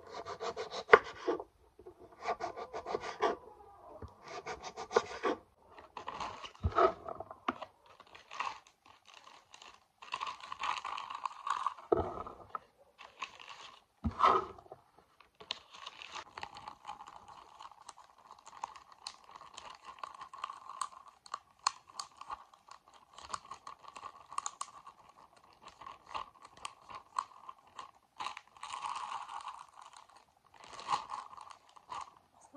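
Kitchen knife cutting a red capia pepper on a wooden cutting board in short runs of quick strokes. From about halfway through, a plastic bag crinkles and rustles steadily as the diced pepper is put into it.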